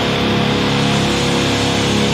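Extreme metal instrumental passage with no vocals: heavily distorted electric guitars hold a sustained chord, with no fast drum strikes.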